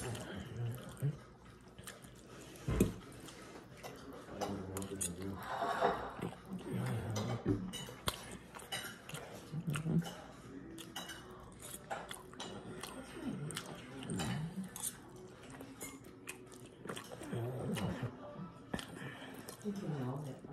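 Someone eating spaghetti close to the microphone: chewing, with a fork clicking and clinking against the plate, and a few short wordless voice sounds. A single knock about three seconds in is the loudest sound.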